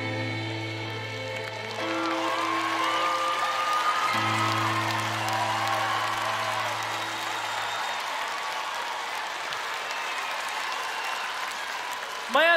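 Live concert music ending on a long held low chord with a voice singing over it, while audience applause builds. The music stops about eight seconds in and the applause carries on.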